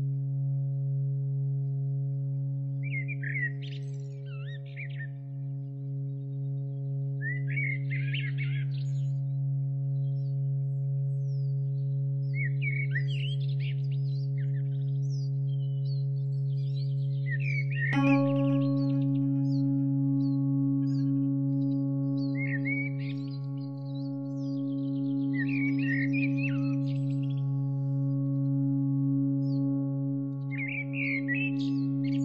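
Meditation music: a steady low drone with a ringing, bell-like tone struck a little past halfway and left to sustain, over recorded small-bird chirps in short bursts every four to five seconds.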